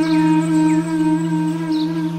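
Slow meditative flute music: a long, held flute note with a slight waver, over a steady low drone.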